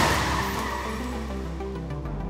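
A side-impact crash test barrier slamming into the side of a Jeep Wrangler, the crash noise of crumpling metal and breaking glass dying away over about a second. Background music plays underneath.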